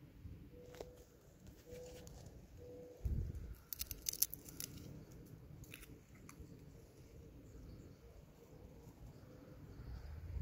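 Faint crackling and clicks of a cotton plant's dry bolls and leaves being handled, with a cluster of them about four seconds in, just after a low rumble.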